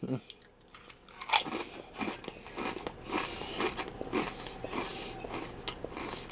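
A wavy potato crisp bitten into with a sharp crunch about a second in, then chewed with a steady run of crunches, about two a second.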